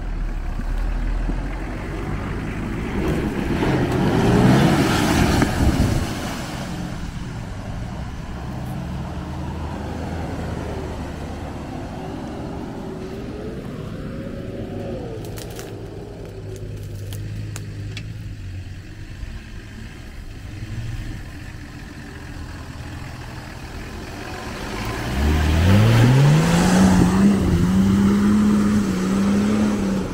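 Off-road 4x4 engine running, with a loud rev surge a few seconds in; near the end it revs up hard, its pitch climbing steeply and then held high.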